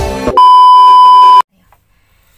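Background music stops about a third of a second in, and a loud electronic bleep at one steady pitch follows, lasting about a second and cutting off suddenly.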